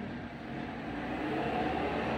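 Low background rumble during a pause in speech, growing slowly louder.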